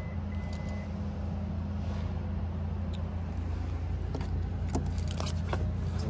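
2013 Subaru Impreza's flat-four engine idling with a steady low hum, with a few light clicks near the end.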